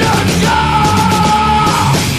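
Crossover thrash metal recording: distorted electric guitars, bass and drums under a yelled vocal that holds one note for about a second in the middle.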